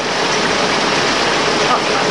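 Cone six-spindle automatic lathe running, a loud, steady mechanical noise with no distinct beat.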